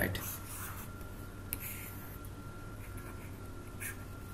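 Faint scratching of a stylus drawing strokes on a writing surface, with a couple of light taps, over a steady low electrical hum.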